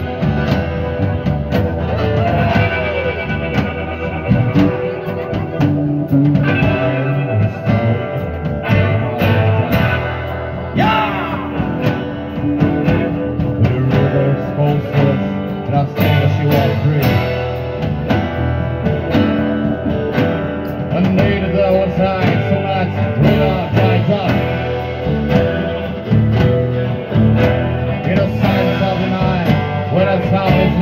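Live rock band playing: guitars and bass guitar over drums, with a steady beat and guitar notes bending in pitch.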